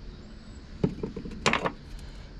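A few light knocks and one sharper clink about halfway through, from a piece of old glass being set down on a corrugated metal bed among other metal finds.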